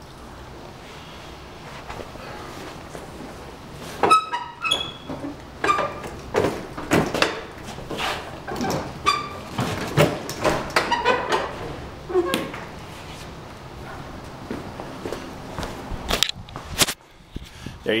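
Loaded convertible hand truck, laid down as a four-wheel dolly, pulled across a concrete floor and up over a raised lip, with wheels rolling and bumping and the load thunking. There are two sharp knocks near the end.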